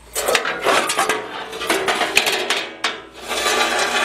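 Sheet-metal Jeep quarter panel being handled and shifted, with irregular scraping and rubbing of metal and a few sharp clanks.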